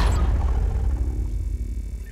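A deep boom closing the logo-sting music, its low rumble fading away steadily.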